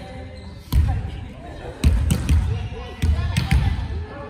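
Volleyball rally: a sharp hand strike on the ball about a second in, then a quick run of further hits on the ball over the next two seconds, each echoing around a large gym hall. Players' voices are heard between the hits.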